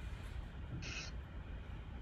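Low hum and background noise of a video-call audio feed between speakers, with one short hiss about a second in.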